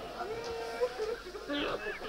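Mourners' voices crying out in a crowd: drawn-out wailing cries, one held, then another rising and falling near the end.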